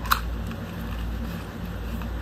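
Small white cardboard box being handled and opened by hand, with one sharp click a moment in as a flap is worked, over a steady low hum.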